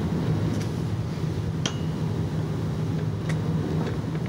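Steady low room hum with no speech, broken by a few small clicks, the clearest a light clink about a second and a half in.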